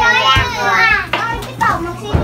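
Young children's voices, chattering and calling out excitedly as they play.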